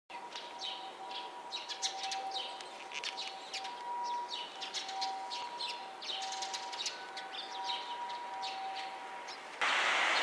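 Eurasian tree sparrows chirping: a run of short, quick chirps throughout, with a faint steady two-pitch tone sounding on and off beneath. Just before the end, a loud rushing noise cuts in suddenly.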